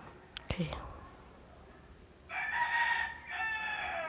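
A fowl crowing once in the background: a drawn-out call in two parts, starting a little after two seconds in, the second part falling away at its end. A couple of faint clicks come in the first second.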